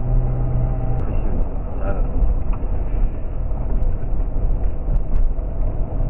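Jeep driving on a rough mountain dirt road: steady, loud engine and road rumble, with a low engine drone most prominent in the first second.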